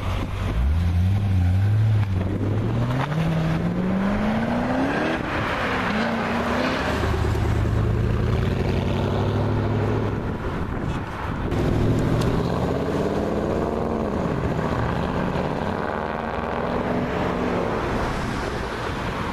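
Porsche Panamera's engine accelerating away, its note climbing steadily for about five seconds before dropping back, then running lower and steadier before rising and falling again through further accelerations.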